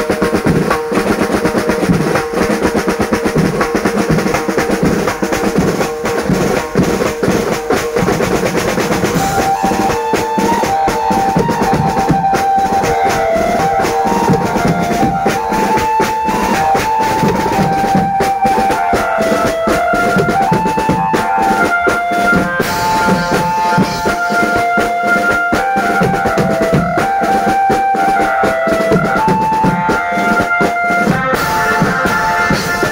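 A street banjo band's drums playing fast, dense rolls on a rack of tom drums and slung side drums, with cymbal crashes. About ten seconds in, a high stepping melody joins over the drumming.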